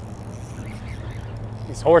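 Steady low hum of a boat motor running under faint background noise; a man's voice starts near the end.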